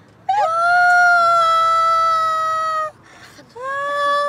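A woman's voice in two long, high, wordless calls, each held on one pitch: the first lasts about two and a half seconds, and the second begins near the end.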